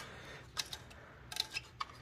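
A few light, sharp clicks of hard plastic as a vintage G.I. Joe toy vehicle is handled and its canopy worked, in two small clusters over faint room tone.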